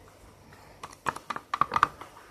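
A plastic squeeze tube being squeezed over a plastic tub, giving a quick run of about eight small clicks and pops in the second half.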